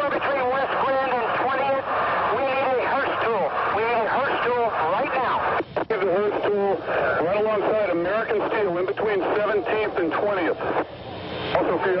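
Men's voices over fire-department two-way radio: continuous rescue radio traffic with a short break about six seconds in.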